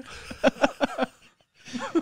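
Men laughing in a run of short pulses, breaking off briefly about halfway through, then laughing again.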